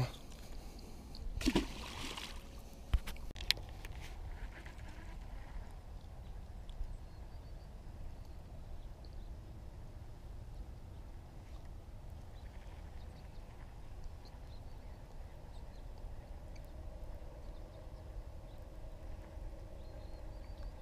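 A cast with a baitcasting rod and reel: a brief whoosh about a second and a half in, then a couple of sharp clicks. After that comes steady low wind rumble while the line is reeled in.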